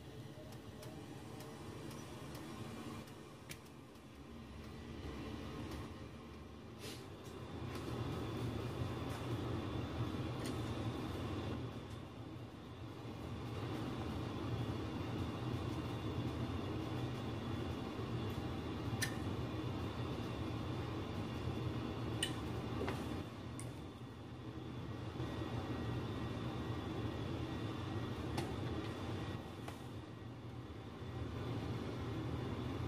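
Steady low rumble of a furnace running, growing louder after the first several seconds, with a few light clicks scattered through it.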